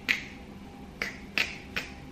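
Four short, sharp clicks at uneven intervals, made by hand or mouth to mimic a knee that clicks every time the leg is lifted.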